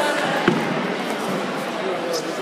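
A jiu-jitsu takedown: two grapplers land on the competition mat with one heavy thud about half a second in, over the chatter of a crowd in a large gym.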